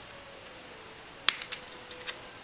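Snap-on plastic back cover of a Huawei Honor 4X phone being pried off by hand, its clips letting go with one sharp click about a second in and a few lighter clicks after.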